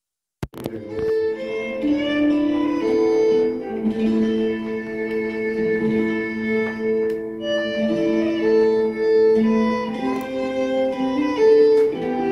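Instrumental music with sustained notes playing through a new 2.1 computer speaker set (subwoofer and two satellites), after a brief dropout with a click right at the start.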